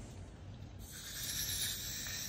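Butane hissing as a refill canister's nozzle is pressed into a blow torch's refill valve to transfer the gas. It is a steady hiss that starts about a second in.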